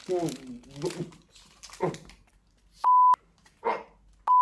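A man gives short, muffled vocal sounds while eating, without clear words. About three quarters of the way in there is a loud, steady beep of about a third of a second at a single pitch near 1 kHz, which starts and stops abruptly like a censor bleep. The beep is the loudest sound.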